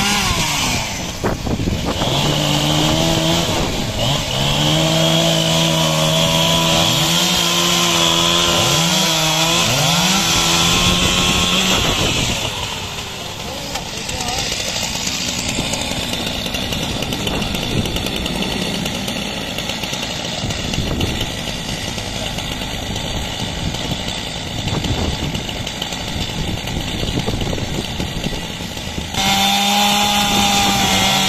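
Two-stroke chainsaw cutting through the branches of a wind-felled tree. It runs fast and loud for about twelve seconds, its pitch wavering slightly as it bites, then drops away. It starts up loud again just before the end.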